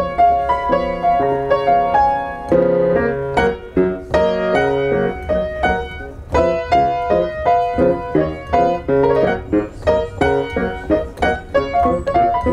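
Piano played by hand: a continuous stream of notes and chords, several new notes each second, with a melody over a lower accompaniment.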